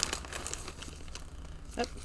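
Clear plastic packaging crinkling irregularly as it is handled.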